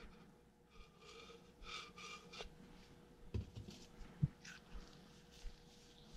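Quiet handling sounds of nitrile-gloved hands rubbing oil onto a small metal hydraulic-pump valve, with light knocks about three and four seconds in, the second the loudest. A faint steady hum runs underneath.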